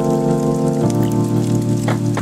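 Broth being poured from a measuring cup into a pot, splashing and pattering over kimchi-wrapped pork rolls. Background music plays sustained chords throughout, with the chord changing about a second in.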